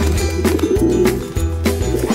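Pigeons cooing as cartoon sound effects over background music with a steady bass beat.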